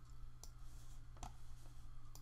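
Two faint clicks from a computer mouse, a little under a second apart, over a low steady hum.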